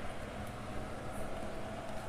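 Steady low background hum with faint noise and no distinct sound events.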